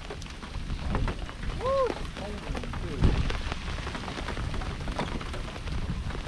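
Rain pattering on the boat and the microphone: many small ticks over a low rumble, with a single thump about three seconds in.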